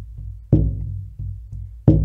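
Large double-headed rawhide pueblo drum struck with a padded beater in a slow, steady beat: two deep strikes, about half a second in and near the end, each ringing on low.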